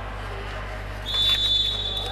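Referee's whistle: one long, steady, high-pitched blast that starts about a second in, the signal that authorizes the server to serve. Under it runs a faint, steady low hum.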